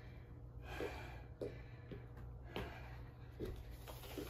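A woman breathing hard, several short audible breaths, worn out in the middle of a set of Navy Seal burpees.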